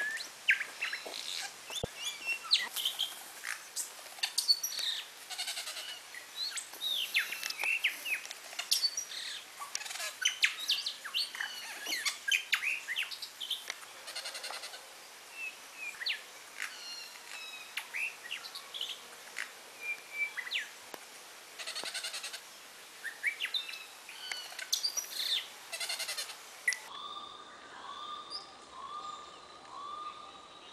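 Many birds chirping and calling, a dense chorus of short rising and falling chirps. About 27 s in, it gives way to one call repeated at an even pace.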